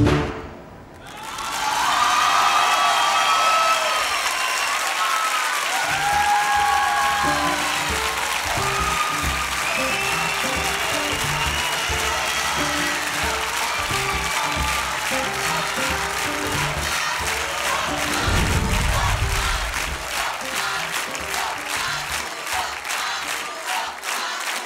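Studio audience applauding and cheering loudly, with shouts over the clapping. From about six seconds in, a rhythmic show music track with a heavy bass beat plays under the applause.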